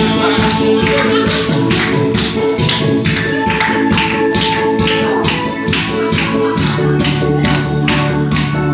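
Tenor saxophone playing a melody with long held notes over an amplified backing track with a steady drum beat of about two hits a second.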